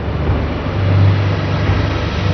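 Loud, steady deep rumble with a rushing noise over it: a sound effect laid under the start of the closing theme.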